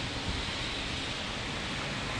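Steady, even outdoor hiss of wind on the microphone.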